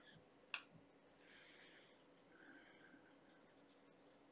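Near silence, broken by one faint click about half a second in and faint brief rustling after it: a small perfume sample vial being opened and dabbed.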